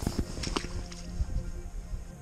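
A few light clicks and rustles of handling as a small yellow perch is unhooked by hand, with faint background music underneath.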